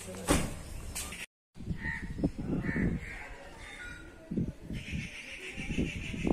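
Birds calling: a few short calls about two and three seconds in, then a stretch of chattering near the end, over irregular low rumbling.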